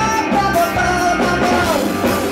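Live indie rock band playing loudly, with electric guitar and a male lead singer singing into the microphone over the band.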